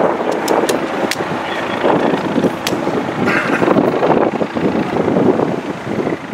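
Wind noise on the microphone outdoors: a steady rush with a few faint clicks.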